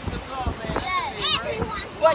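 Indistinct voices of people talking, with a low wind rumble on the microphone underneath.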